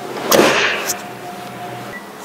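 Trunk lid of a Buick Grand National pulled down by hand and shut: a short rush of noise with a sharp click a fraction of a second in, then a quieter stretch.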